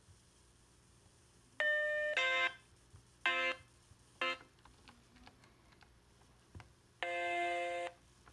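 Synthesized computer beeps played through laptop speakers: four short tones of changing pitch about a second and a half in, then a longer steady tone of about a second near the end.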